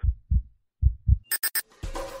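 Heartbeat sound effect: low thumps in lub-dub pairs, two heartbeats. About a second and a half in come a few sharp clicks, and music with a drum beat starts near the end.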